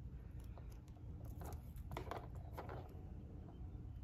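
Faint, scattered small clicks of a beaded chain pacifier clip and a plastic pacifier being handled, as the clip's end is threaded through the pacifier's handle ring.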